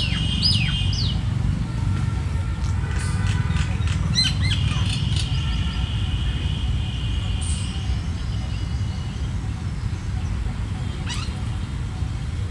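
Birds calling: sharp down-slurred whistled calls near the start, a cluster of calls with a held note around four to seven seconds in, and another call near the end, over a steady low rumble.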